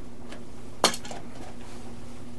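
A single sharp click about a second in as the propeller is pulled off the electric motor's shaft, over a faint steady hum.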